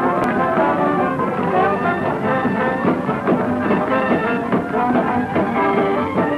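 Early-1930s film soundtrack of a dance orchestra with brass playing a chorus-line dance number.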